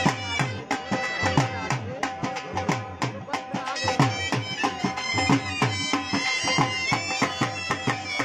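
Live Punjabi dhol drumming playing a quick, steady luddi dance beat, with deep bass strokes that drop in pitch under sharp treble strokes. A wind instrument plays a melody over a steady drone on top of the drums.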